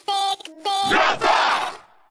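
Pitched-down cartoon character voices shouting the show's name, "Larva!": two short syllables, then a longer hoarse yell that fades out near the end.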